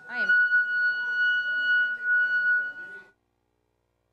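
Loud, steady high-pitched feedback whistle, which those present take for a hearing aid, with a brief warble at its onset and voices underneath. It cuts off suddenly about three seconds in.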